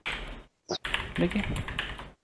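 Typing on a computer keyboard: a run of keystrokes with a short break about half a second in.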